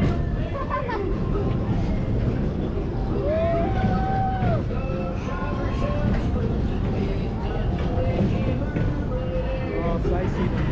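Ride background audio: a voice and music playing over a park loudspeaker, mixed with crowd chatter and a steady low rumble.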